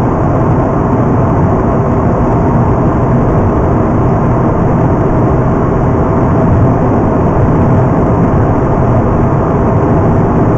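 Inside the cabin of a Mazda RX-8 at motorway speed: its twin-rotor rotary engine runs steadily under tyre and road noise.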